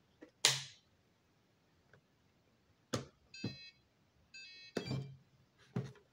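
Power-up of a FlySky radio transmitter: a short sharp noise about half a second in, a click, then two brief runs of electronic beeps about a second apart, with more clicks near the end.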